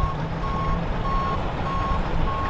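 Reversing alarm of a pickup truck backing a boat trailer down a ramp: a steady high beep repeating evenly a little under twice a second, over a low rumble.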